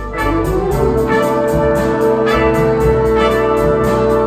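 A jazz big band playing: trumpets and saxophones holding long chords over piano and upright bass, with an even beat of about three strokes a second. A note slides up into a held chord in the first second.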